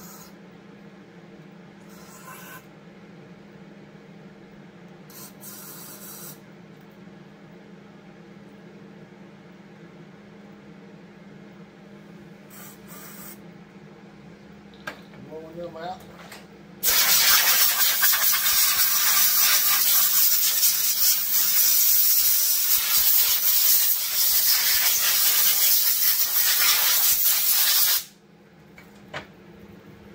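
Compressed-air blowgun blowing out the passages of a small-engine carburetor during cleaning. There are a few short hissing blasts, then one long blast of about eleven seconds just past halfway. A faint steady hum runs underneath.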